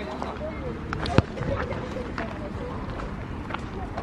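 A soccer ball kicked once, a single sharp thud about a second in, over outdoor background noise with faint voices in the distance.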